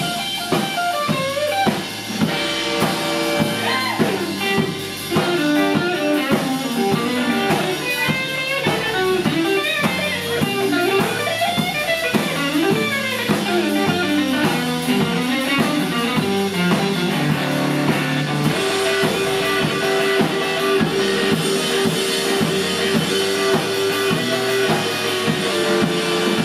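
Live blues band playing an instrumental passage: a Berly electric guitar solos with bent, gliding notes over drum kit and bass. In the last third the guitar holds one long sustained note.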